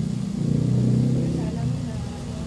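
Indistinct voices in the background over a low hum, loudest around the middle.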